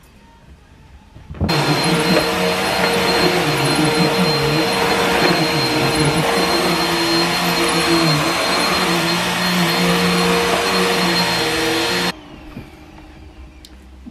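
Corded upright vacuum cleaner running over an area rug. It switches on abruptly about a second and a half in and cuts off about two seconds before the end. It gives a steady high whine over a loud rushing noise, with a lower hum that wavers.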